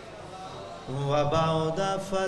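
A man's voice chanting the Arabic opening recitation of a majlis sermon in long held melodic notes, coming in about a second in after a quieter pause.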